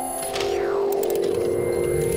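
TV channel ident jingle: held synthesizer chords with a sweep falling in pitch about half a second in.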